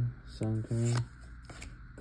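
Pokémon trading cards being handled and slid one off another as a pack is flipped through, faint rustles and clicks. A short spoken word, a card's name, comes about half a second in and is the loudest sound.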